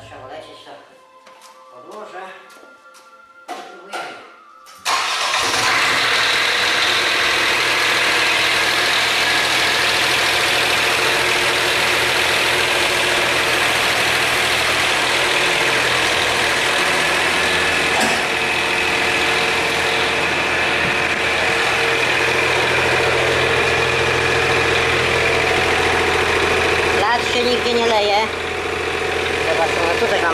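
Old mini excavator's engine starting about five seconds in, after a few light metal clinks, then running steadily. The level drops slightly near the end.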